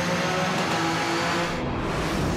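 Race car engine running hard at high revs as the car speeds along a tarmac road, its pitch holding level and then stepping.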